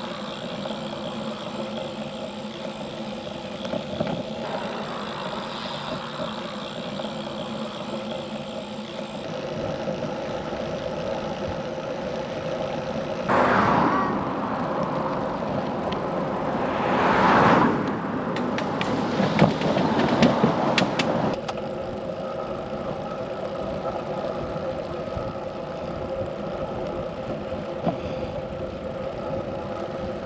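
Bicycle riding noise: a steady hum of tyres and drivetrain with wind on the microphone. It grows louder and rougher for several seconds in the middle, with a few sharp clicks.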